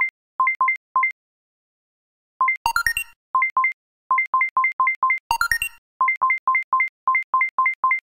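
Electronic alert beeps: short two-tone beeps in quick runs of about three to four a second, with a pause about a second in, and twice a brighter chiming flourish a few seconds apart. An earthquake alert from the seismic-intensity monitoring display.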